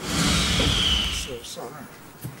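A loud rushing burst about a second long, heavy in the low end with a thin falling tone in it, as a contestant's box is opened on a TV game show, then quieter voices.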